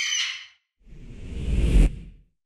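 Logo sound effects: a short, high bird-of-prey screech lasting about half a second, then a whoosh that swells with a deep low rumble and cuts off suddenly just before the end.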